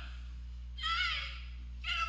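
A short, high-pitched squealing vocal sound from a person about a second in, with another starting near the end, over a steady low hum.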